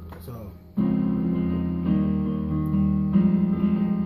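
Chords played on a Yamaha Portable Grand digital keyboard: three loud sustained chords struck in turn, the first about a second in, each ringing on into the next.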